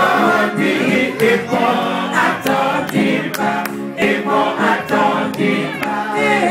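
A group of voices singing together in harmony, with a few sharp clicks through the song.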